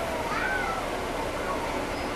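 Steady drone of a NABI transit bus's Caterpillar C13 diesel and its engine cooling fans, heard from the rear of the cabin. A faint whine falls in pitch during the first second, and a brief high squeal rises and falls about half a second in.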